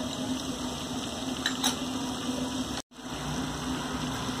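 Steady low background hum and hiss, with two faint clicks about a second and a half in. The sound cuts out completely for a moment just before three seconds.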